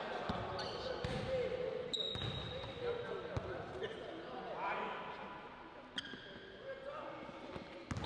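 Basketball bouncing on a hardwood gym floor as a player dribbles, a few sharp knocks at uneven spacing, with faint voices in the background of a large gym.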